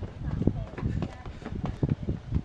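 Quick footsteps of a person walking fast with a hand-held camera, a short knock about two to three times a second, with faint voices in the background.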